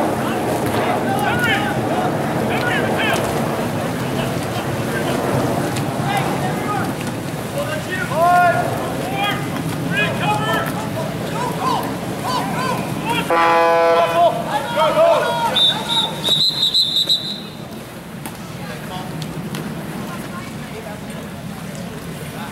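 Scattered shouts from spectators and players over the splashing of a water polo game. A little past halfway a short horn blast sounds, and a few seconds later a referee's whistle blows one long high blast.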